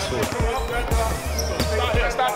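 Basketballs bouncing on a sports hall floor, a quick irregular run of thumps from several balls, over background music with a steady bass and faint voices.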